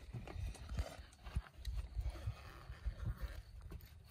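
Irregular low thumps and bumps with faint rustling: plastic containers and a mesh insect cage being handled on a table.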